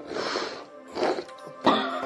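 Background music with steady held notes, over a person coughing and clearing their throat in three short bursts while eating face-down from a plate.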